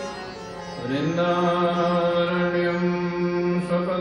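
Devotional Indian music: a voice holds long sung notes over a steady drone, sliding up into a held note about a second in.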